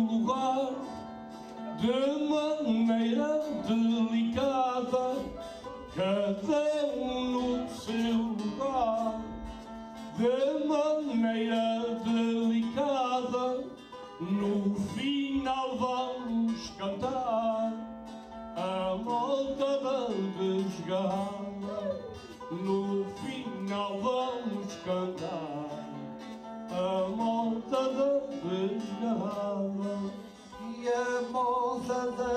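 A man singing a Portuguese cantoria verse into a microphone, in phrases with short breaks between them, over plucked guitar accompaniment.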